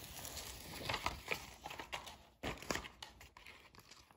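Faint rustling and crinkling of a sheet of self-adhesive contact paper being handled, with a short louder rustle about two and a half seconds in.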